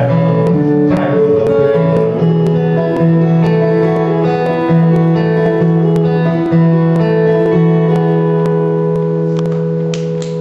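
Steel-string acoustic guitar played solo, picked notes repeating over a held bass note.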